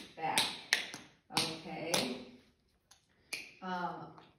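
Tap shoes' metal taps striking a hard floor in a few sharp, unevenly spaced strikes as a tap dancer demonstrates slaps and slap backs.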